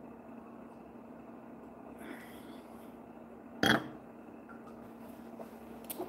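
A woman's single short burp about halfway through, just after a sip of red wine, over a steady low hum in a quiet room.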